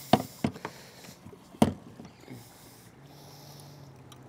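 A few sharp knocks and clicks from fishing gear being handled aboard a small boat, the loudest about a second and a half in, with a faint steady low hum in the second half.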